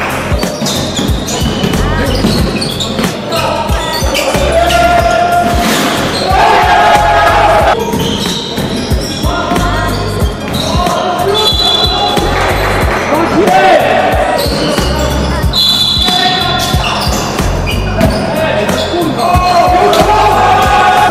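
A basketball bouncing on a sports-hall court with repeated sharp knocks, mixed with a music track that has a bass line.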